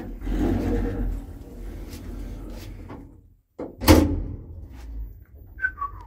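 Lift's automatic doors running for about three seconds, then a loud door thud about four seconds in, and a short two-note falling chime near the end.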